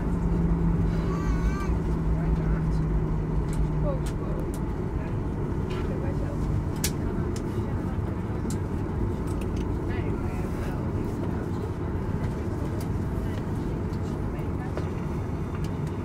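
Cabin noise inside a Boeing 737 taxiing after landing: a steady low rumble of the engines and the rolling airframe. A low hum that is present at the start fades out about four seconds in.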